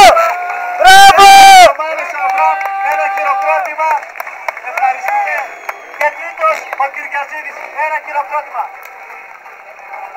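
Two loud, steady-pitched blasts of a handheld air horn: one cutting off right at the start, the other lasting under a second about a second in. After them comes the chatter of a spectator crowd, with a few fainter horn toots.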